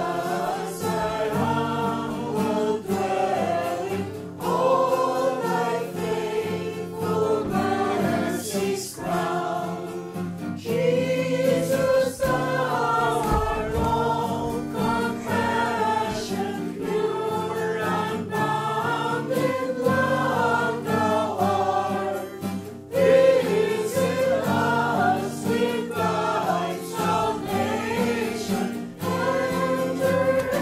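Choral Christian music: a choir singing sustained, legato phrases.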